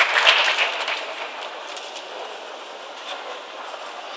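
Audience applause that dies away about a second in, leaving a steady background hubbub of the crowd.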